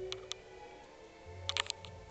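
Movie soundtrack music playing from a TV, with a few sharp clicks over it: two just after the start and a quick cluster about a second and a half in.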